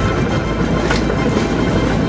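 Steel wheels of a pedal-powered rail bike rolling along old railway track: a steady rumble with a sharp click about a second in.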